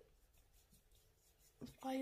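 Faint, soft rubbing of fingertips spreading face primer over the skin, followed near the end by a woman starting to speak.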